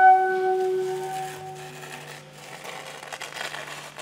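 A soprano saxophone holds one long note that fades away over the first second and a half, over a low steady drone. After that comes a soft, airy hiss with a few small clicks.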